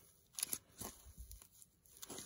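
Fingers handling and squeezing a small block of packing foam: faint, scattered scratchy rustles and small crackles.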